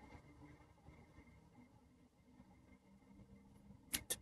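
Near silence: faint room tone, with two sharp clicks close together at the very end.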